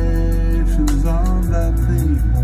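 A song played back loudly through large Augspurger studio monitors. It has strong deep bass under sustained tones, and a melodic line that bends in pitch about a second in.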